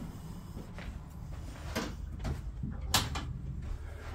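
A few sharp clicks and knocks from an old wooden door being handled and opened, the loudest about three seconds in.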